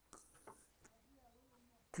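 Near silence: a short pause in the men's talk.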